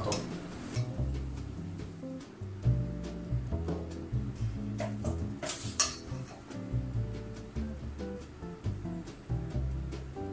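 Bossa nova background music with a plucked bass line, and a couple of light clinks of a spoon against the foil moulds and metal bowl about halfway through as batter is spooned in.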